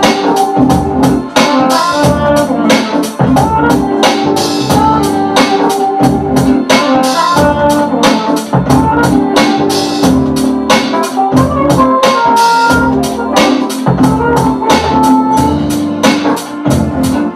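Hip-hop beat played live on an Akai MPC2000XL sampler: a steady drum pattern under sustained chords with a melody moving on top.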